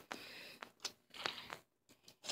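Faint scattered clicks and light rustling, with a brief near-silent gap near the end: low-level handling noise.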